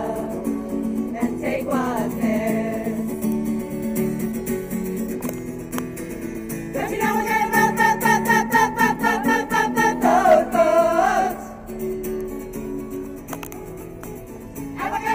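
Voices singing to a strummed acoustic guitar, the singing loudest from about seven to eleven seconds in.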